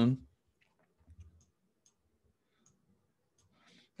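A few faint, short clicks spread through a quiet stretch, after the last word of speech trails off. A soft breath comes just before talking starts again.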